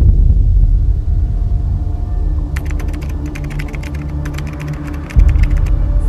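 Cinematic trailer sound design: a deep boom opens a sustained low drone. Fast, sharp ticking clicks join about two and a half seconds in, and a second deep boom hits near the end.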